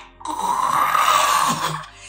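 A woman vocally imitating a horrid guttural sound: one long rasping groan lasting about a second and a half.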